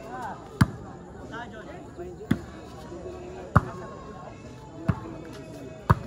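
Volleyball rally: the ball is struck sharply five times, about once every second and a quarter, each a loud slap that stands out over the crowd's steady chatter and calls.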